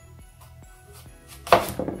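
A kitchen knife cutting through a raw apple to take its top off, heard as one short, sudden cut about one and a half seconds in, over soft background music.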